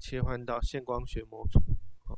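Speech only: a man narrating in Mandarin.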